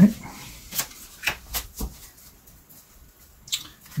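Tarot cards being handled on a tabletop: a few light taps and slides as the leftover cards are gathered up and squared into a deck.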